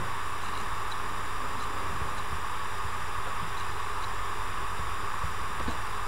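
Steady, even hiss of background noise with no other sound: the recording's noise floor.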